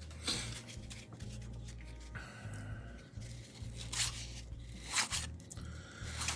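Paper-stock baseball cards from a freshly opened wax pack rustling and sliding against each other as they are handled and fanned apart, in a few brief soft rustles, the loudest near the end, over a low steady hum.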